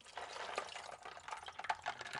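Water poured from a glass bowl onto ice cubes in a clear plastic tub: a faint, uneven trickle and splash with small irregular ticks.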